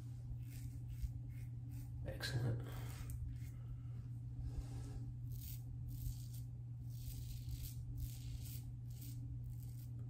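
Tatara Muramasa adjustable double-edge safety razor, set to four, scraping through lathered stubble on the jaw and neck in a quick series of short strokes.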